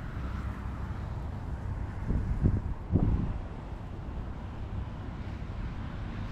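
Wind buffeting the microphone: a steady low rumble, with stronger gusts about two and three seconds in.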